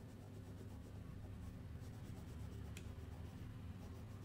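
Crayon scribbling on paper in quick back-and-forth shading strokes, faint and steady, with one small sharper tick partway through.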